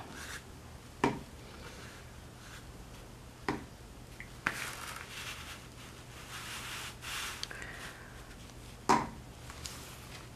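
Soft scratchy rubbing of a watercolour brush on paper and handling sounds, with a few light knocks: about a second in, around the middle, and a louder one near the end. A faint steady low hum runs underneath.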